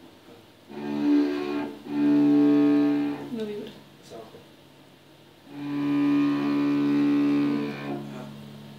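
Cello bowed by a beginner: three long, steady notes, the last held longest, with short gaps between them.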